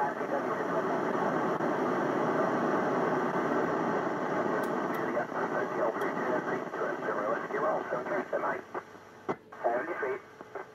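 ISS FM repeater downlink heard through a Yaesu FT-847 receiver: thin, narrow radio sound of garbled, overlapping voices mixed with FM noise, as several stations transmit into the repeater at once in a pile-up. It falls away about eight seconds in, with a couple of sharp clicks near the end.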